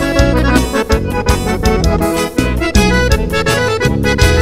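Accordion-led Brazilian dance music played by a band, an instrumental passage without vocals over a steady beat and bass.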